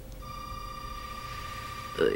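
Telephone ringing: one long, steady electronic ring tone that starts a moment in and holds to the end.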